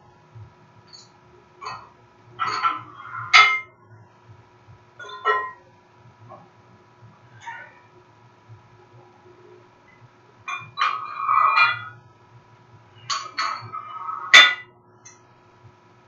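Iron weight plates clinking and clanging against each other and the floor as they are handled and set down, in about eight short knocks, some coming in quick clusters.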